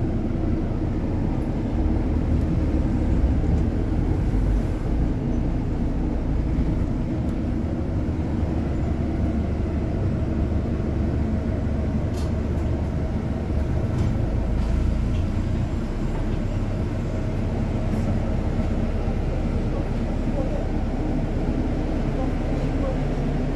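Inside a moving double-decker bus: a steady low rumble of engine and road noise.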